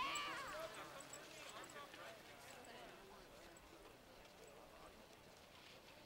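A voice calling out, loudest at the start and fading within the first second, followed by fainter distant voices and then near-quiet background.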